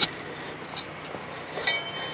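Steel broadfork being worked into the bottom of a dug trench: one sharp metallic clink right at the start, then only faint noise. A thin, steady high tone sounds briefly near the end.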